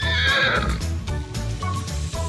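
A horse whinnying once, a wavering call lasting under a second at the start, over background music.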